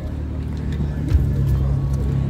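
Outdoor background noise with a low steady hum and a fluctuating low rumble.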